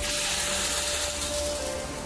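Wet concrete shoveled into a steel chute and sliding down it, a steady rushing hiss, with background music holding long notes underneath.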